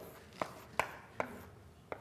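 Chalk writing on a blackboard: four sharp taps and short strokes of the chalk against the board as figures are written.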